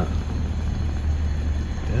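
Propane fire pit's gas flames burning steadily through lava rock, a steady low rushing noise.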